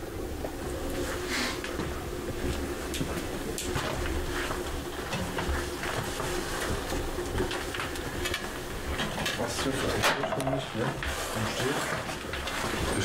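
Scattered knocks, clicks and clatter of people moving about and handling things in a small room, with low indistinct voices.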